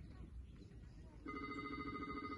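An electric ringing, one steady pitch rapidly trilling, starts a little over a second in and rings on.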